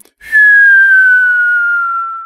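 A single long whistle, sliding slowly downward in pitch and fading away, a comic going-down cue for the joke about pressing the basement button.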